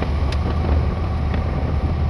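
Truck engine running steadily while driving, heard from inside the cab as a strong low drone with road and cab noise over it.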